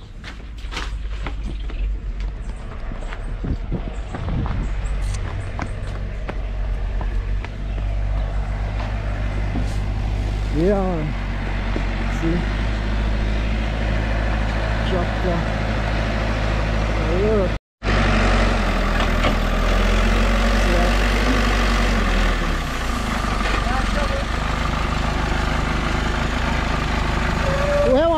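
Diesel engine of a backhoe loader running steadily as it works a gravel pile, with a few short voices. The sound drops out briefly about two-thirds of the way through and comes back a little louder.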